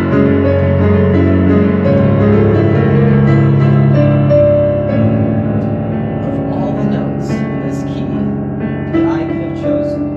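Digital piano playing a melody over arpeggiated chords with a low bass line underneath.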